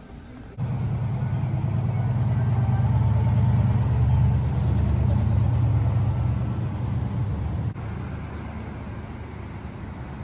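Low rumble of motor vehicle traffic on a nearby street. It starts abruptly about half a second in, swells for a few seconds, then drops away sharply near the end to a quieter background hum.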